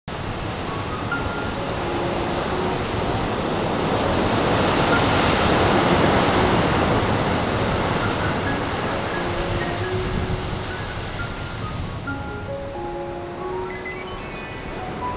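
Ocean surf washing on a beach, swelling to its loudest around the middle and then easing, under soft background music of sparse, held notes.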